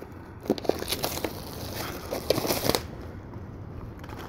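Plastic shrink-wrap crinkling and tearing as it is picked at and peeled off a Blu-ray steelbook package, busiest for the first three seconds, then quieter.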